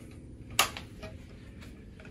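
A single sharp click about half a second in, then two faint ticks, over quiet room tone.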